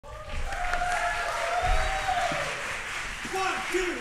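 Audience applause in a hall, with voices in the crowd, as the director takes the stage. Near the end a spoken count-off, "one, two," cues the band in.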